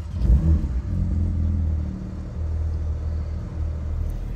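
Porsche 911 GT3 RS's 4.0-litre flat-six engine idling with a steady low rumble, briefly louder and rising just after the start.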